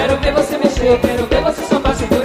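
Live axé band music with a steady, driving drum beat, played without vocals.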